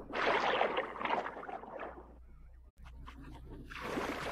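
A rush of dense noise for about two seconds fades to a brief near-silence. Near the end, orchestral soundtrack music with held, sustained notes swells in as a new cue begins.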